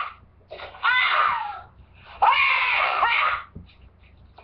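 A high-pitched voice shrieking in two bursts of about a second each, the first about half a second in and the second about two seconds in.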